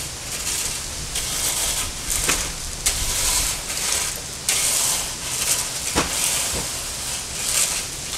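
Metal garden rake dragged back and forth through crushed-stone gravel: gritty scraping and rattling of stones in repeated strokes, with a few sharper clicks.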